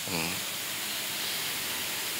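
Steady hiss of background noise on the microphone's sound, with a short low vocal murmur from a man just at the start.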